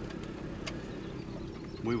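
Pickup truck engine idling steadily, a low even rumble heard from inside the cab.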